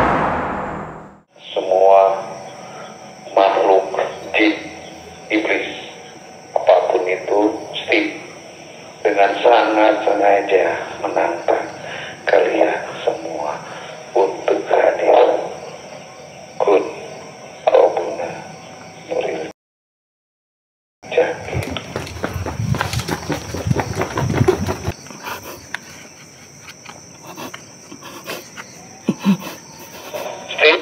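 A man talking in short phrases, with a steady high-pitched hiss behind him. The sound drops out completely for over a second about two-thirds of the way through, then a few seconds of low rumbling noise follow.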